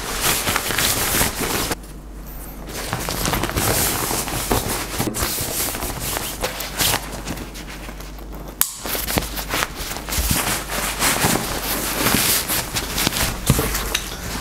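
Crinkling and rustling of a nylon waterproof dry bag being handled, packed and closed by hand, full of short sharp crackles.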